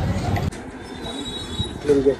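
Loud, steady street noise that cuts off abruptly about half a second in, leaving quieter room sound with a brief vocal sound near the end.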